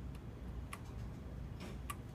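Computer keyboard keys pressed one at a time while typing: about four short, unevenly spaced clicks over a low steady hum.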